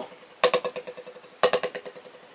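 Buzz strokes (multiple-bounce strokes) with a drumstick on a practice pad. Two strokes about a second apart, each a quick run of close bounces that dies away within about half a second.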